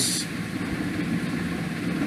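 Steady low background hum with no clear pitch and an even level, with the end of a spoken syllable at the very start.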